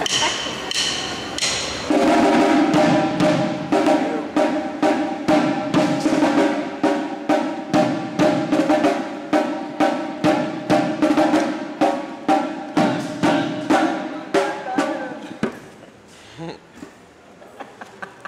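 A ragga beat played with drumsticks on drums, about two strokes a second over a steady hum. The beat starts about two seconds in and stops near the end.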